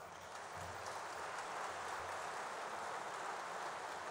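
Audience applauding: many hands clapping in a steady, even patter that swells a little in the first half second.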